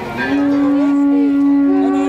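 Blown horns sounding long, steady notes: one starts just after the beginning and holds, and a second horn joins at a higher pitch near the end.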